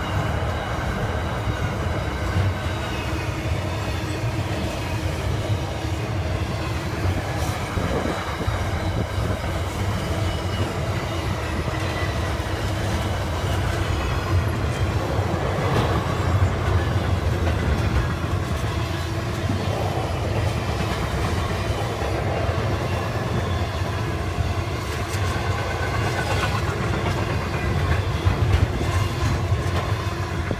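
Container freight wagons rolling past on the rails in a steady rumble, with occasional clicks and knocks from the wheels on the track.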